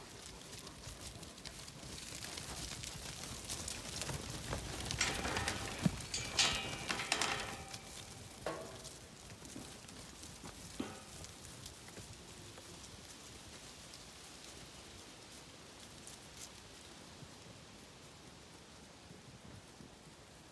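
Hooves and feet of a flock of sheep and dogs pattering and rustling through grass and fallen leaves, with a few sharper knocks, loudest in the first half and dying down to a faint steady rustle.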